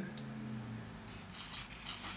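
Pencil drawing on paper: a brief scratchy stroke about a second and a half in, over a faint steady low hum.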